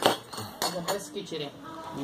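Metal spoons clinking and scraping on stainless steel plates during a meal, with a sharp clink at the start and a few lighter ones after.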